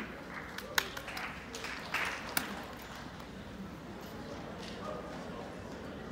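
Quiet hall room noise with a few scattered sharp knocks and clicks, the loudest about a second in and another just after two seconds, under faint murmuring.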